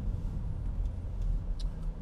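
Low, steady rumble of a car's road and engine noise heard inside the cabin while the car rolls slowly in traffic, with a few faint ticks.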